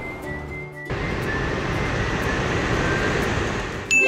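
Airplane flight sound effect: a steady jet-like rushing noise that starts suddenly about a second in and cuts off just before the end, over faint background music.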